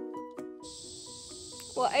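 Plucked background music ends about half a second in, then a steady high-pitched buzz from a chorus of insects takes over.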